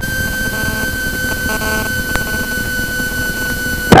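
Light aircraft engine drone in the cabin of a Socata TB10 on approach, a low steady rumble with a constant high-pitched electrical whine over it.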